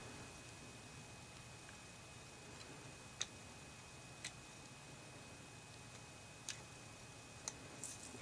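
Four faint, scattered clicks of pistol parts touching as the slide of a Beretta U22 Neos .22 pistol is fitted over its frame and lined up. The loudest comes about three seconds in, over low room noise.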